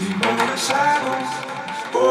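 Progressive/melodic house track in a breakdown: the kick drum and bass have dropped out, leaving layered synthesizer notes.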